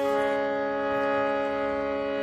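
Harmonium holding two notes down together: a steady, sustained reed chord.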